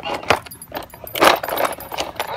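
Hard plastic baby toy cart rattling and clattering as a dog bites and shakes it against concrete, with a sharp knock early and a louder clatter a little past halfway.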